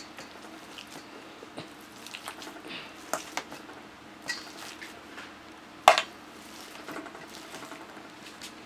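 Potato masher working boiled potatoes and sweet potato in a stainless steel bowl: soft squishing with scattered clinks of metal against the bowl, the sharpest a little before six seconds in.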